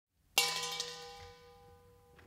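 A single sudden metallic strike, bell-like, about a third of a second in, its several ringing tones fading slowly.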